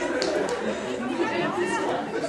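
Indistinct chatter of several spectators talking near the microphone, with a couple of short sharp clicks in the first half second.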